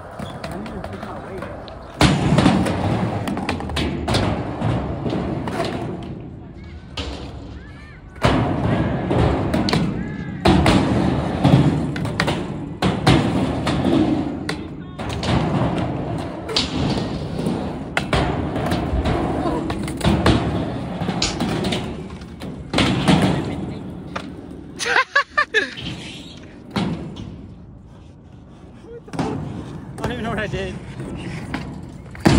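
Skateboard wheels rolling over skate-park ramps, with repeated thuds and clacks of the board hitting the ramp surface.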